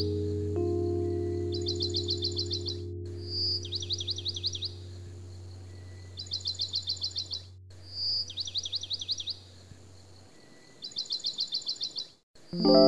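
Soft ambient music with sustained low chords that fade out about ten seconds in, overlaid with a repeating bird call: a short whistle followed by a quick run of rapid chirps, recurring every couple of seconds.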